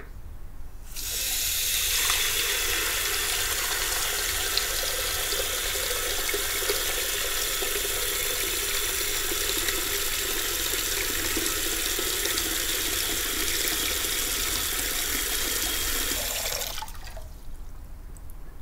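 Bathroom tap running into a washbasin, filling it with water. The water comes on about a second in, runs steadily, and is shut off about a second before the end.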